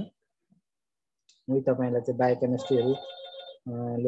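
An electronic phone ring tone, a steady chord of high tones, sounds for about a second under a person's voice, about two and a half seconds in.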